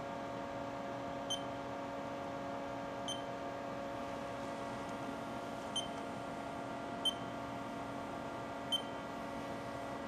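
Haas CNC control pendant's keypad beeping as keys are pressed: five short, high beeps, irregularly one to three seconds apart, over a steady electrical hum.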